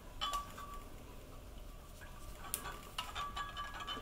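Silicone whisk stirring melted cocoa butter in a glass measuring cup: faint soft taps and clinks against the glass, with one sharper click about two and a half seconds in.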